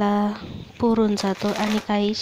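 A woman's voice drawing out one long vowel, then speaking again about a second in, with light handling noise.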